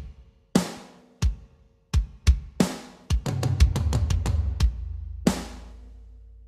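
Rock drum kit played back from a multitrack mix: separate kick and snare hits, then a rapid fill of about seven strokes a second starting about three seconds in, and a loud hit near the end that rings out. A low tone hangs on under the fill and fades.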